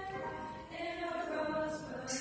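A choir singing in harmony, holding a chord and moving to new notes about a second in.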